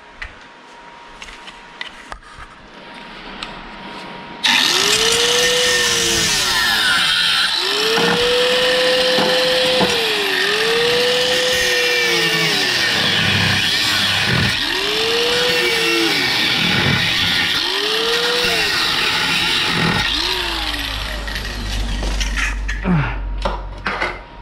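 Angle grinder switched on about four seconds in and cutting into car-body sheet steel, its motor pitch sagging and recovering several times as the disc bites. It is switched off near the end and spins down.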